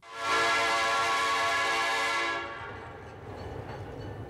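Train whistle blowing one long blast of several steady tones at once for a little over two seconds, then dying away into a low rumble.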